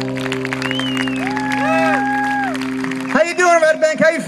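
A live acoustic band's closing chord rings out with a few sliding held notes over scattered clapping, then cuts off about three seconds in and a man's voice takes over.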